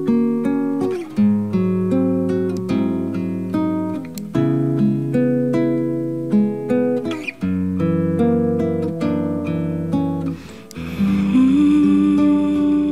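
Nylon-string classical guitar played solo, a steady picked pattern of chords that change every second or so, in an instrumental passage of a song.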